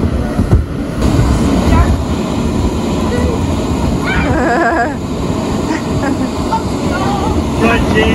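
Children bouncing inside an inflatable bounce house, with irregular thumps on the vinyl over the steady noise of its electric inflation blower. Children's voices are mixed in, with a call about halfway through and a laugh near the end.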